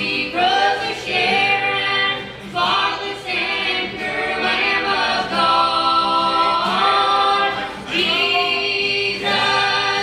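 Gospel song sung in close harmony by a man and two women through a sound system, in phrases a few seconds long, with an acoustic guitar strummed underneath.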